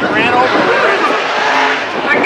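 IMCA modified dirt-track race cars running on the track, with voices over them.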